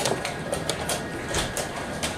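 Irregular sharp clicks and taps, several a second, from chess pieces being set down and chess clocks being pressed across the hall of a rapid tournament, over a steady background hum.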